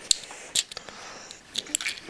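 Hands handling small plastic toy figures, with a few light clicks and taps.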